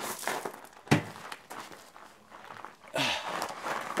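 Handling noises as small parts are picked up and fiddled with: rustling, one sharp knock about a second in, and a brief crackling rustle near the end.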